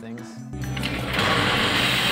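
Commercial espresso machine running as a shot is pulled: a low steady pump hum comes in about half a second in, with a loud hiss over it.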